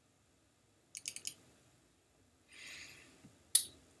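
A quick run of about four sharp computer clicks about a second in, with the screen's image changing, followed by a short soft hiss and one more sharp click shortly before speech.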